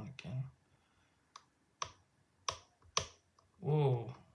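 Pick lifting the serrated pins of a five-pin American Series 10 padlock under tension: four sharp metallic clicks about half a second apart, each a pin stack clicking on its serrations as it is set.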